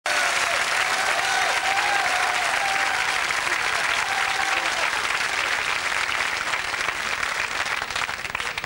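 Studio audience applauding, a dense and steady clapping, with a few voices calling out over it in the first half. The clapping thins slightly near the end.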